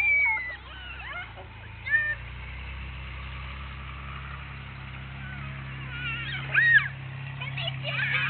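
Puppy whimpering in a few short, high-pitched whines: one right at the start, one about two seconds in and a stronger one near the end.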